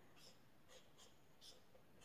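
Near silence, with a few faint strokes of a felt-tip marker on paper.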